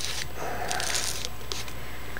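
Aluminium foil being folded and pressed up by hand, giving a quiet, uneven crinkling.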